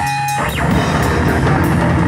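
Live rock band playing loud, with drum kit, bass guitar and electric guitar. A held high note breaks off with a downward slide about half a second in, and the full band comes in with drums and repeated cymbal hits.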